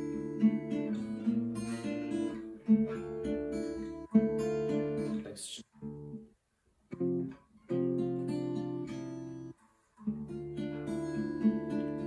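Acoustic guitar fingerpicked: chord shapes played as broken arpeggios, single strings plucked in a repeating pattern and left to ring, with two short breaks about halfway through and near ten seconds in.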